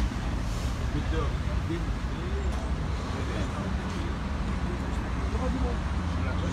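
Steady low rumble of road traffic, with faint, indistinct voices of people talking in the background.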